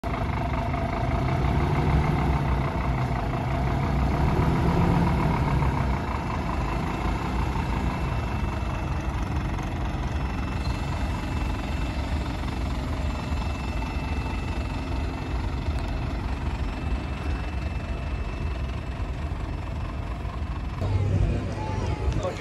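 Scania P320 fire engine's five-cylinder diesel running with a steady low rumble, a little louder for the first six seconds or so.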